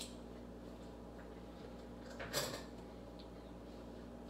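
Quiet kitchen with a steady low hum. About two and a half seconds in comes one brief scrape of a metal spoon against a stainless steel mixing bowl.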